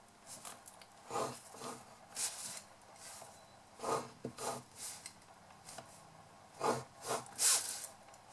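Metal-tipped scoring stylus drawn along a ruler across cardstock, scoring diagonal fold lines: about seven short scratchy strokes with pauses between them.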